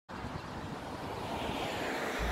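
Wind buffeting the microphone outdoors, a steady rushing noise with uneven low rumbles.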